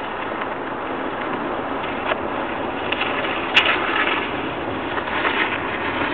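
Ford Fiesta driving slowly on an icy road, heard from the car: steady engine and road noise, with a sharp click about three and a half seconds in.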